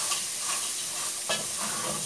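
Diced calabresa sausage and onion sizzling as they fry in an aluminium pot, stirred with a wooden spoon, with a few brief scrapes of the spoon against the pot.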